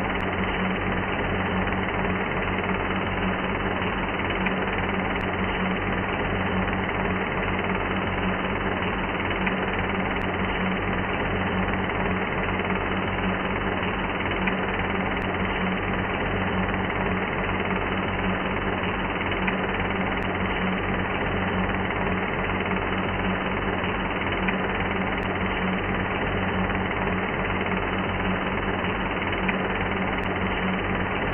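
Industrial music: a dense, steady noise drone with a fast, jackhammer-like mechanical rattle over a low hum, with no vocals and no change in level throughout.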